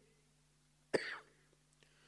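A man's single short cough about a second in, in an otherwise near-silent pause with a faint low hum.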